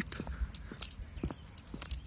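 Footsteps on a tarmac path with scattered light clicks and jingles, over a low rumble.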